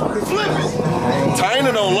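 Voices talking over the running engine of a jet ski close by.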